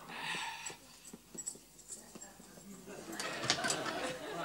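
Studio audience laughter after the line, with scattered small knocks, then a door latch and the door being pulled open near the end.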